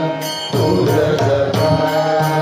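Group of men singing a Carnatic namasankeerthanam bhajan together, accompanied by mridangam drumming, with sharp high strikes about twice a second keeping time.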